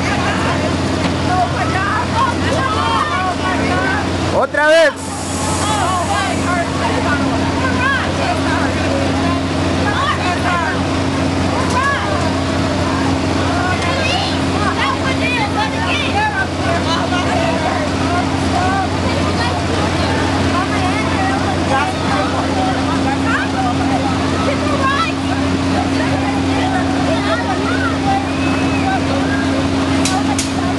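Fairground thrill ride running: a steady low machine hum under many riders screaming and shouting, the cries rising and falling throughout, with one loud shriek about four to five seconds in.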